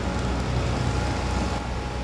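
A steady low engine-like rumble under an even hiss, like a vehicle or machine running.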